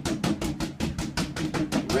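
A rapid, steady drumroll at about ten strokes a second.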